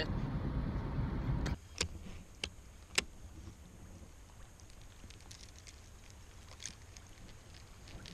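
Car cabin road noise from driving, cut off suddenly after about a second and a half. It gives way to a quieter steady hiss with a few sharp clicks, three close together and one later, as hands handle a baitcasting rod, reel and crankbait lure.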